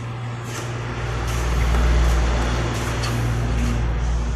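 A motor vehicle's engine running, a low steady hum with a noisy wash over it that swells to its loudest about halfway through and then eases a little.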